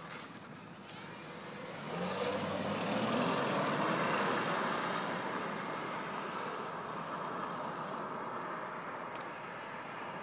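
A car passes close by and drives off: engine and tyre noise swell about two seconds in, peak, then fade slowly as it pulls away.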